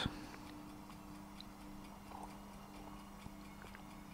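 Quiet room tone with a steady low electrical hum and a few faint, scattered ticks.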